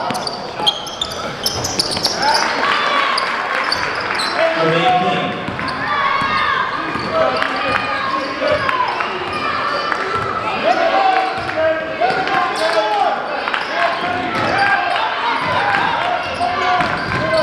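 Live game sound in a high school gym: a basketball bouncing on the hardwood court as it is dribbled, amid a steady hubbub of spectators' and players' voices echoing in the hall.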